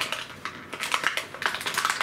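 Toy packaging rustling and crackling as hands dig into a cardboard box and pull a toy out: a quick, irregular run of crinkles and small clicks.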